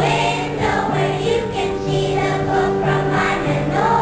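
Children's choir singing a Christmas song over steady instrumental accompaniment.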